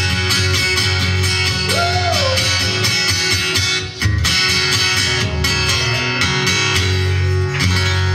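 Acoustic guitar strummed steadily through the closing bars of a live rock song, with a brief break about four seconds in.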